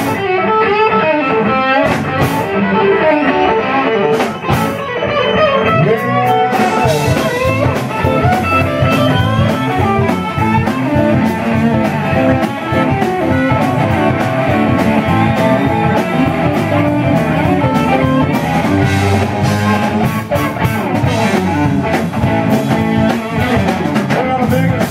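Live rock band playing an instrumental passage: electric guitar lines over bass guitar and drum kit, with no vocals.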